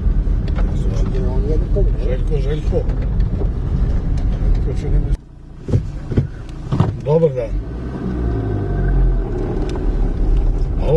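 Low, steady rumble of a car driving on a rough dirt road, heard from inside the cabin, with faint voices under it. The rumble cuts off abruptly about five seconds in, and a quieter stretch with scattered voices follows.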